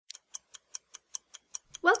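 Rapid, even clock-like ticking, about five ticks a second, which stops as a voice begins speaking near the end.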